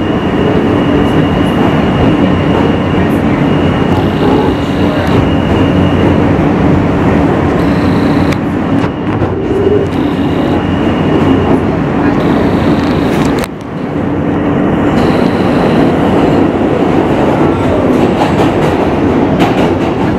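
New York City subway car running, heard from inside the car: a loud, steady rumble and rattle of the train in motion, with a high whine that comes and goes and a short drop in level about two-thirds of the way through.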